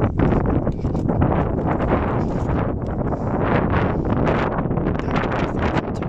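Loud, gusting wind buffeting the microphone, a continuous rush that flutters up and down without a break.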